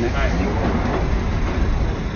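London Underground train running, heard from inside the carriage: a steady, loud rumble with a hiss over it.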